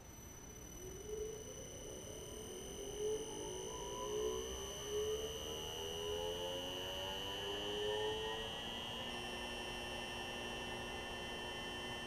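Small AC induction motor run by an Omron 3G3JX-AE004 variable-frequency drive, ramping up in speed: its whine rises steadily in pitch as the drive raises the output frequency, then levels off about nine seconds in once the motor reaches constant speed at 60 Hz. A steady high-pitched whine runs throughout.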